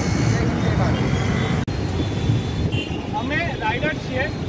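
Road traffic noise: a steady low rumble of vehicle engines, with a brief break in the sound about halfway through. Voices talking join in near the end.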